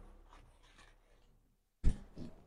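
Mostly quiet, with faint scraping of a steel spatula among whole spices dry-roasting in a kadhai, and one sharp knock near the end.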